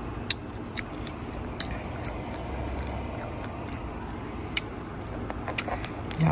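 A person chewing and eating, with a few sharp, irregular mouth or spoon clicks over a steady low background rumble.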